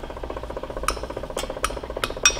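A metal utensil clinking against an Anchor Hocking oven-proof glass dish, three sharp clinks about a second in, as Italian seasoning is stirred into melted butter. A steady hum runs underneath.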